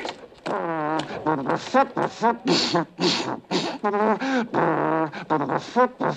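A man shouting a German marching cadence in short barked syllables ('links… drei…').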